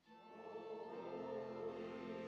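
Choir singing sustained notes, a new phrase entering right at the start after a brief pause.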